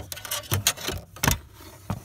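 Klein Tools steel fish tape being fed off its plastic reel and shoved through behind the vehicle's interior trim, giving a few irregular sharp clicks and rattles.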